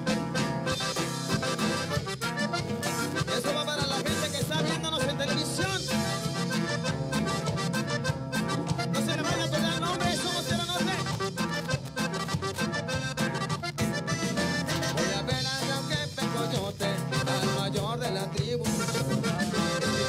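Live cumbia band playing, with accordion and saxophone carrying the melody over bass, guitar and a steady drum and percussion beat.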